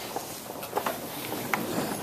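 Handling noise from a handheld camera being moved: rustling, with a few sharp clicks about a second and a second and a half in.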